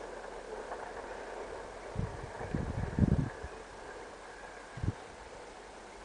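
Steady outdoor background hiss with low gusts of wind buffeting the microphone, about two seconds in, around three seconds in (the loudest), and once more near five seconds.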